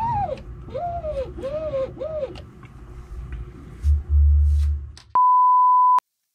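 A steady, loud electronic beep on a single high tone for the last second, cut off abruptly. It is preceded by a run of short rising-then-falling tones, about one every 0.7 seconds for the first two seconds, and a low rumble about four seconds in.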